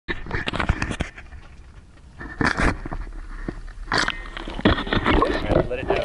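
Rough, irregular rushes and splashy crackle on a rod-mounted action camera as it is lowered from the air into choppy water, with indistinct voices mixed in.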